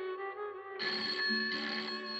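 Old desk telephone's bell ringing, a burst starting about a second in, over background film music with long held notes.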